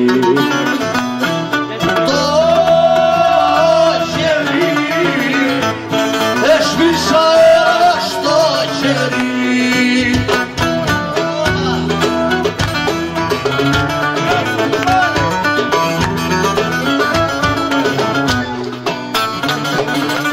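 A Greek song performed live: a man sings with acoustic guitar accompaniment. The sung line stands out most in the first half, and the plucked strings carry more of the sound after about ten seconds.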